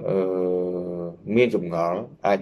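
A man speaking Khmer, holding one drawn-out syllable for about a second before going on in normal speech.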